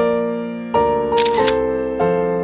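Background piano music with chords struck about every two-thirds of a second. A camera shutter click comes a little past the middle.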